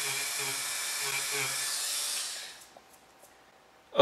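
Dremel rotary tool running steadily as it grinds potting material off a tire-pressure-sensor circuit board. It winds down and stops about two and a half seconds in.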